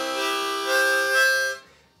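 Diatonic blues harmonica sounding several holes at once: a smeared chord of mixed notes whose pitches shift about a second in, stopping after about a second and a half. It is the unclean, notes-running-together sound that is typical of beginners, rather than a clean single note.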